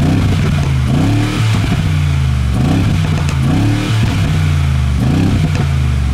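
2020 Mercedes-AMG G63's twin-turbo 4.0-litre V8 revving through its side-exit quad exhaust, blipped about four times and dropping back to idle between blips.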